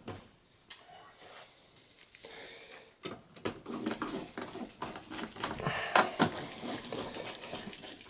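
Screwdriver driving the screws of a desktop CPU heatsink into a computer case: at first a few scattered clicks, then from about three seconds in a busy run of small clicks and metal scrapes, with two sharper clicks near the six-second mark.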